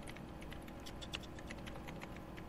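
Typing on a computer keyboard: faint, irregular key clicks, several a second, over a low steady hum.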